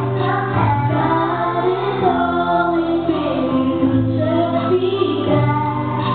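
A young girl singing a Christian gospel song into a microphone over full musical accompaniment with steady bass notes, amplified through a PA system.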